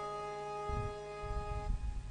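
Electronic stage keyboard holding a sustained reedy, accordion-like chord that dies away near the end, with a low drum thud about a third of the way in.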